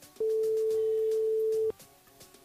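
Telephone ringback tone of an outgoing call: one steady single-pitch ring of about a second and a half, French-style at about 440 Hz, heard while the called phone rings and before it is answered.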